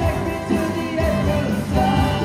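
A massed band of wooden marimbas playing together over a steady low beat, with voices singing along.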